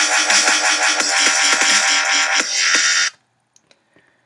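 Dubstep drop played back from an Ableton Live session, a synth bass made in Native Instruments Massive over a drum beat, stopping suddenly about three seconds in. A few faint clicks follow.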